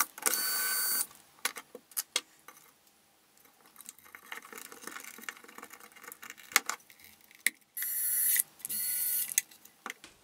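Small electric screwdriver whirring for about a second as it backs out the Pozidriv screw of a battery cover, then faint clicks and handling rattles as a 9 V battery is fitted, and two more short whirrs near the end as the screw is driven back in.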